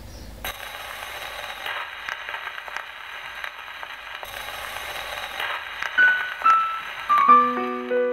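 Old gramophone record surface noise: a steady thin hiss with scattered crackles and pops. About six seconds in, a piano comes in with single notes stepping down in pitch, then chords near the end.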